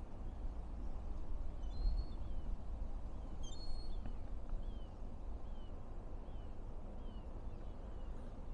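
A low, uneven outdoor rumble, with a small bird calling over it: a couple of short high chirps early on, then a run of short falling calls repeated evenly, a little more than once a second, through the second half.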